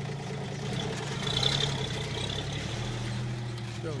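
Toyota FJ40 Land Cruiser's engine running at low speed as it pulls slowly away across grass, a steady low hum that swells slightly about a second and a half in.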